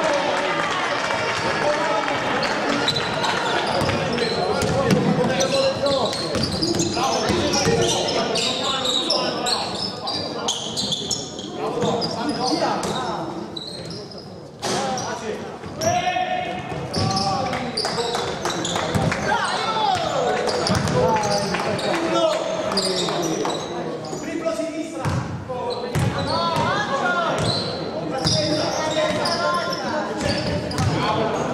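Basketball being dribbled and bounced on a wooden gym floor during a game, with players' voices calling out, all echoing in a large hall.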